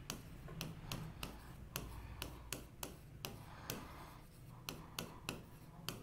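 A stylus tapping and clicking on the glass of an interactive display board while handwriting, in faint, irregular clicks about two or three a second.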